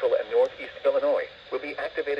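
Only speech: the weekly alarm-tone test statement read over NOAA Weather Radio, heard through a First Alert WX-150 weather radio's small speaker, thin and cut off in the highs.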